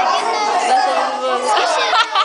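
Chatter of many schoolchildren talking over one another.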